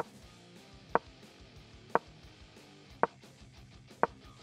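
Short wooden-sounding clicks of game pieces being moved on a board, about one a second, over faint background music.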